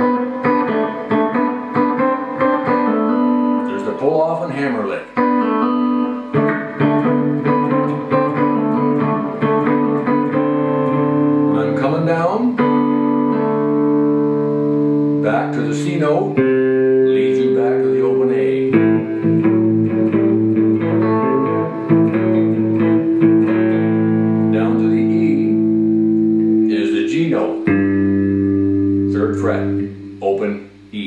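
Fender Stratocaster electric guitar played fingerstyle in a blues shuffle. A thumb-picked bass line rings under a finger-picked rhythm and lead line, with the bass note changing every few seconds.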